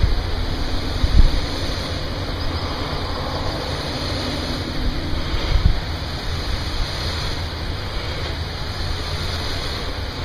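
Steady rushing air noise with a low rumble, rising briefly about a second in and again around five and a half seconds.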